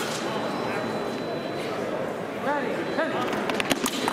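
Chatter and scattered calls from a crowd in a large hall, with voices rising about two and a half seconds in. Near the end, a quick run of sharp clicks and knocks as two sabre fencers close and one lunges.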